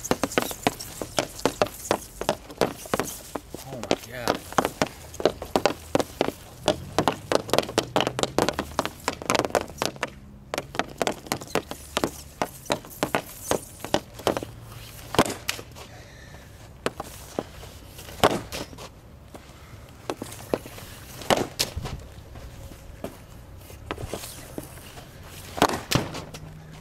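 Quick, irregular clacking of a hockey stick blade against a puck and the wet shooting surface, thickest in the first ten seconds. After that come a few louder single cracks of sticks striking pucks.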